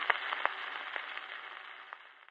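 Surface noise of a 78 rpm shellac record after the music has ended: a steady hiss from the stylus in the groove, with a few scattered clicks, fading out near the end.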